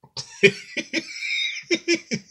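A man laughing hard in a run of short bursts with breathy gasps between them.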